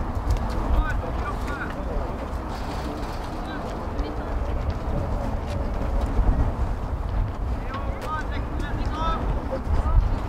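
Indistinct voices of youth football players and spectators calling out across the pitch, a few short shouts rising and falling in pitch, over a steady low rumble.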